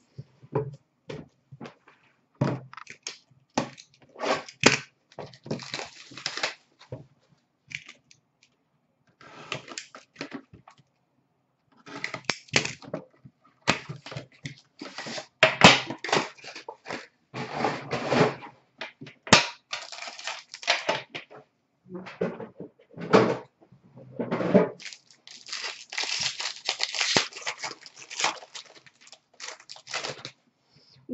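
Boxes and packs of Upper Deck Premier hockey cards being handled and torn open: irregular crinkling, tearing and knocking of cardboard and plastic wrap, densest near the end.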